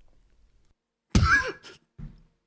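A man coughing once, sharply, about a second in, with a fainter second cough or throat-clear just after.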